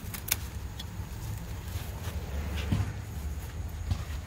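A steady low outdoor rumble with a few sharp clicks and rustles near the start, as a handheld phone brushes through sweet potato leaves.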